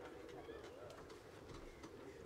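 Near silence: faint background hush with a faint low cooing bird call and a few soft clicks.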